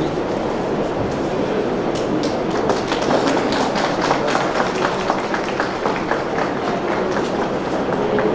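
An audience applauding: a steady wash of clapping, with individual sharp claps standing out more from about two seconds in.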